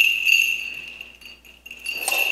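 Small metal bells on a swung censer's chains jingling as it is swung during incensing. The ringing swells and fades, dies away about a second and a half in, and then jingles again near the end.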